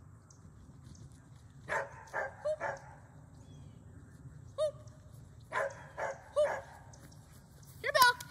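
A small dog barking in short, high yips that come in bursts: about four quick ones two seconds in, a single one near the middle, and three more about a second later.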